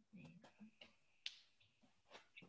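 Near silence with faint, indistinct room sounds and a single sharp click a little over a second in.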